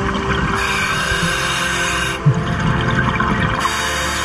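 A diver breathing through a Kirby Morgan MK48 full-face mask's demand regulator underwater: a hiss of air drawn in, then a low bubbling of exhaled air, then a second hiss near the end. Background music plays underneath.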